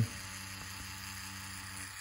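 Tattoo machine running at about seven volts, a faint, steady hum with no change in pace, while its needle lines an orange peel.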